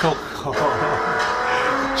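Racing car engine running at high revs, a steady high note that sets in about half a second in, heard from a film trailer through a TV's speakers.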